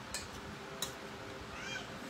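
Two sharp clicks of cutlery on a plate, then near the end a short high-pitched animal call that rises and falls, over a low steady room hum.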